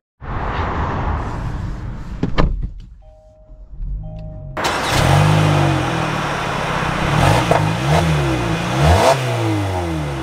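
2025 Kia Sportage's 2.5-litre four-cylinder engine starting suddenly about four and a half seconds in, then revving up and down several times.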